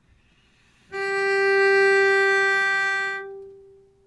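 A cello bowed on a single high G, held in one long stroke of about two seconds and then released, the note ringing on as it fades. It is played as the on-screen note reads in bass clef.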